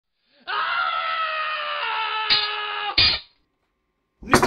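A baby crying: one long wail starting about half a second in, with a catch near the middle and a short last sob just after three seconds. The sound is dull and lacks its top end, as from a low-quality recording.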